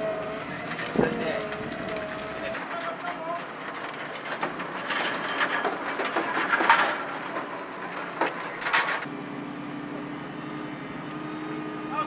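Forklift engine running while it handles a loaded military trailer, with scattered metal clanks and knocks from the load: one sharp knock about a second in and a cluster of them in the middle. A steady engine hum takes over in the last few seconds.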